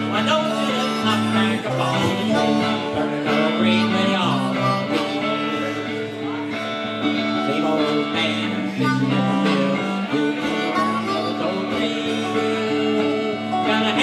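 Live acoustic-style blues trio playing: electric guitar and dobro picking together with harmonica played into a microphone.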